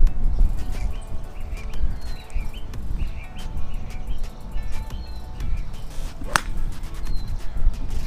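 A driver's clubface strikes a golf ball off the fairway grass: one sharp crack a little past six seconds in.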